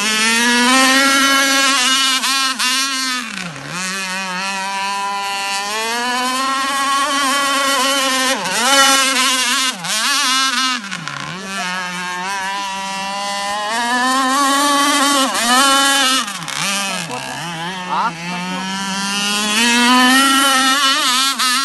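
Chainsaw-derived two-stroke engine of an RC powerboat running at high revs, its note dipping sharply several times as the throttle is eased off and then climbing back up.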